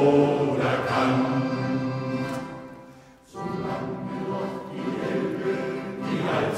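Male shanty choir singing with accordion accompaniment. The held sound fades down to a brief near-pause about three seconds in, then the choir and accordion start again suddenly.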